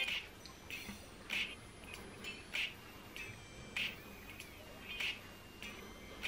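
A comb and fingers being drawn through freshly rinsed short curly hair in a series of short, faint squeaky strokes, about one or two a second. The squeak is the sign of hair washed squeaky clean by a purple toning shampoo and conditioner.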